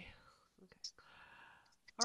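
Near silence: a faint whispered voice about halfway through, with a soft click just before it.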